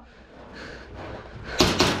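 Two sharp cracks about a quarter second apart near the end, over faint background noise: airsoft gun shots.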